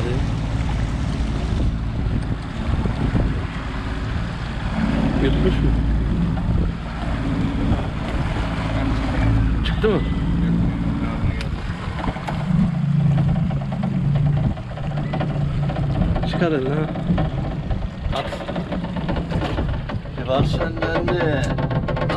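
Motorboat engine running steadily on open water, with low, indistinct voices near the end.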